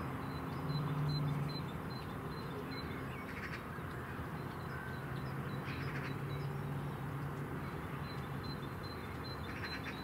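Crows cawing three times, a few seconds apart, over a steady low hum.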